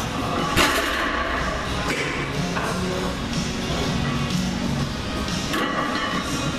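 Background music, with one loud thud about half a second in.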